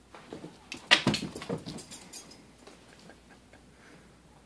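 A dog and a young cat play-fighting on carpet: a sharp thump about a second in, then about a second and a half of scuffling and small animal noises before it goes quiet.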